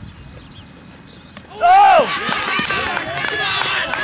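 A short sharp knock about a second and a half in, then a loud shout and a group of boys' voices shouting together: cricket fielders going up in an appeal and celebrating a wicket.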